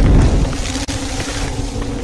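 Sound effect for an animated end-title card: a deep boom at the start that fades over about half a second, followed by a steady rushing whoosh.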